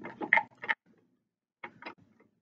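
Small plastic cubes clicking as they are lifted out of the plastic buckets of a toy balance scale and set down on its plastic beam: a quick run of clicks, then two or three more near the end.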